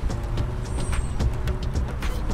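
Steady low rumble of a river cruise boat under way, with scattered faint clicks.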